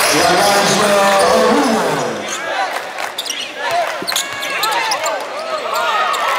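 Live basketball game sound on a hardwood court: the ball bouncing and sneakers squeaking, with players' and spectators' voices, loudest in the first two seconds.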